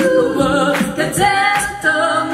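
Female a cappella group singing live in close harmony, voices only: several parts hold and glide between chords over a steady beat.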